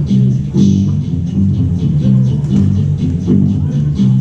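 Amplified guitar played live: a repeating riff of low notes with strummed chords.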